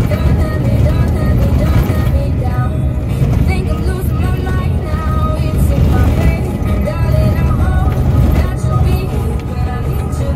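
A song with a singing voice playing over the steady low rumble of a ZR2 truck driving on a gravel road.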